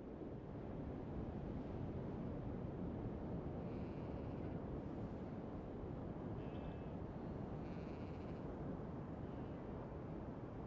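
Steady low outdoor ambience rumbling evenly, with a few faint high chirping calls about four, six and a half and eight seconds in.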